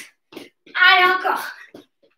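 A woman's voice calling out once, for about a second. Short taps come just before and after it.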